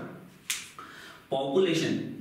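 A single sharp click about half a second in, followed a moment later by a man's voice resuming speech.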